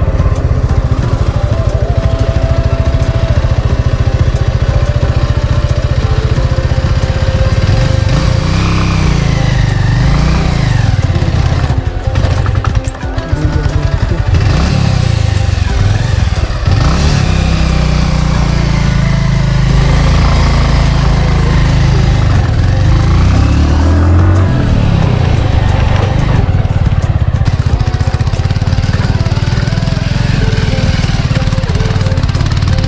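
Motorcycle engine running on a rough dirt road, its pitch rising and falling several times as the rider speeds up and eases off, with a brief drop about thirteen seconds in. Background music plays over it.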